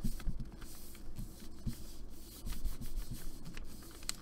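Hands rubbing a sheet of paper down over a gel printing plate, a run of irregular papery rubbing strokes, to lift the leftover paint off the plate.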